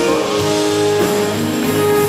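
A live pop band playing the song, with a long held note.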